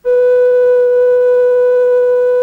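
Film soundtrack music: a wind instrument holding one long steady note that starts abruptly.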